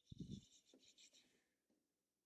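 Near silence: room tone, with a faint low thump and a brief scratchy rustle that dies away about a second in.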